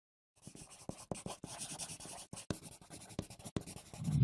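A drawing tool scratching across paper in quick strokes, with short sharp taps where it meets the page; it starts about half a second in.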